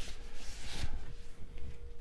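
Soft, irregular rubbing and rustling of a paper inner sleeve and cardboard album jacket as a vinyl record is handled, with a few light knocks.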